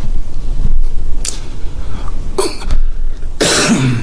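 A man coughing three times, about a second apart, the last cough the loudest.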